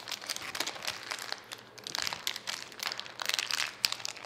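Small clear plastic bag crinkling as fingers handle and pick at it, in irregular crackles that get busier in the second half.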